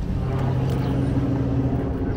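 A motor vehicle engine running with a steady low hum over street traffic noise.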